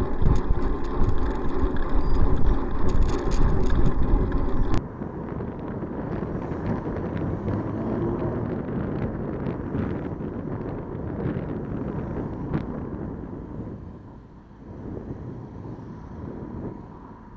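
Wind buffeting the microphone of a bicycle-mounted camera while riding, with road and traffic noise underneath and a few rattling clicks. About five seconds in it cuts abruptly to a quieter, steadier background of passing traffic.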